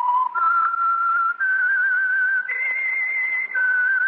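A person whistling the slow signature theme of an old-time radio mystery drama: a lone melody of held, wavering notes that climbs in three steps and then drops back down near the end.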